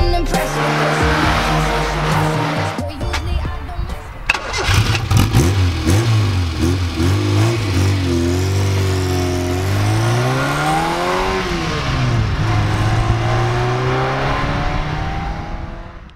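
Autobianchi A112 Abarth 70HP's small four-cylinder engine running through its exhaust: a steady idle at first, then a series of quick throttle blips from about four seconds in, and one longer rev that rises and falls near the middle, before it settles and fades out at the end.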